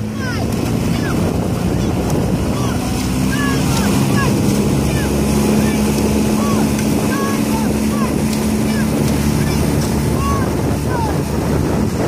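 Motorboat engine running steadily, with water rushing and wind on the microphone.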